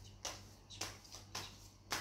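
A deck of tarot cards being shuffled by hand, an overhand shuffle giving a soft papery stroke about every half second, four strokes in all.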